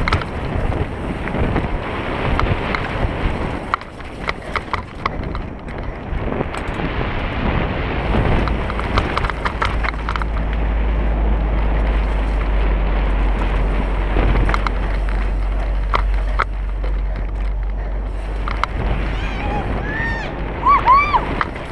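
Wind rushing over the microphone as a mountain bike rides a dirt singletrack, with tyre noise and scattered clicks and rattles from the bike over bumps. Heavier low wind buffeting sets in about halfway through.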